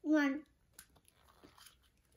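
A child's short vocal sound, then a few faint clicks and rustles as a plastic Kinder Surprise toy capsule is pried open in the hands.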